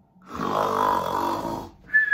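A woman imitating a sleeping person: one long snore, then near the end a high, steady whistle on the out-breath that falls slightly in pitch, the cartoon sound of someone fast asleep.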